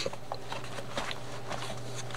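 Faint rustling and a few light taps of paper and card pages being handled, over a steady low hum.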